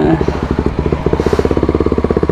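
Sport motorcycle's engine running at low revs as the bike pulls away from a stop, with a fast, even beat of firing pulses.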